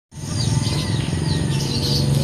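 Outdoor ambience: small birds chirping in short calls over a steady high insect buzz and a low steady rumble.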